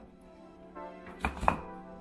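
Two sharp knocks a quarter second apart, a little past the middle, as frozen food packages are moved against each other and the wire shelves of a freezer.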